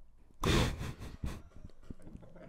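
A short, breathy burst of laughter about half a second in, a rush of breath into a close microphone, followed by a few softer breaths.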